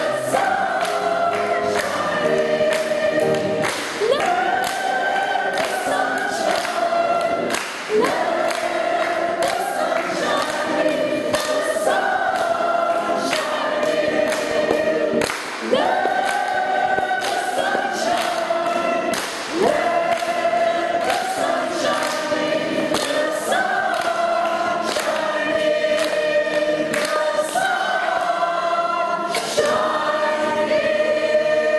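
A choir singing in unison and harmony, with sustained notes, and hands clapping along throughout.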